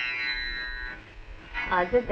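A plucked string instrument sounds a bright, ringing chord that fades away over about a second. A voice comes in near the end.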